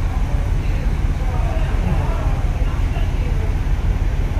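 Steady low rumble of a cruise ship's engines and machinery, with faint voices of other people in the background.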